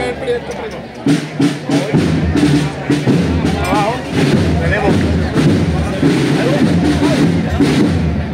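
Processional band drums beating repeatedly, with bass drum strikes, over the chatter of a crowd.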